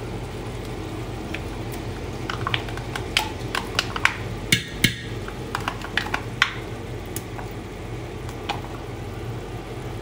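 A metal spoon tapping and scraping against a stainless steel stockpot as lumps are spooned in, a cluster of sharp clicks between about two and six and a half seconds in. A steady low hum runs underneath.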